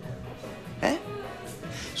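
Soft background music with faint steady tones, and one brief vocal sound from a man a little under a second in, in a pause of the dialogue.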